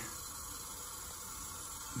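Water running steadily into a sink at about 1.35 gallons per minute, a soft even hiss.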